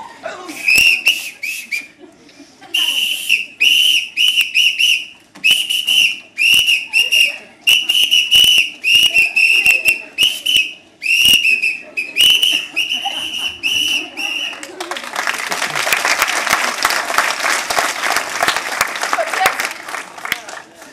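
A long run of short, high whistle blasts, all at the same pitch, about two a second for some fourteen seconds, with small clicks between them. Applause follows for about five seconds.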